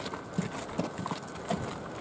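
Footsteps on a concrete walkway, a steady train of short knocks about two or three a second, with light wind noise behind them.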